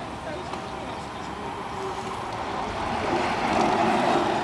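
Outdoor street noise with faint voices, and a rushing noise that swells near the end.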